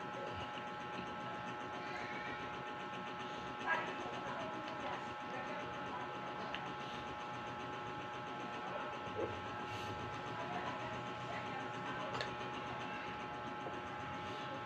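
Steady background hum with several constant faint tones, under faint distant voices; a few brief soft ticks stand out about a third of the way in, again after about nine seconds, and near the end.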